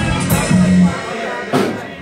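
Live band playing: drum kit with cymbal strikes over a low bass line and guitar. The playing drops back in the second half, with one more drum hit before it comes in full again.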